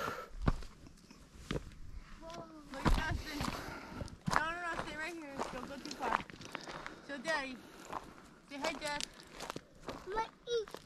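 Footsteps scuffing and crunching on a steep, loose dirt slope, a few sharp steps standing out. Voices talk on and off further away.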